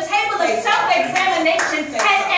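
A woman preaching in a raised voice, with hand clapping.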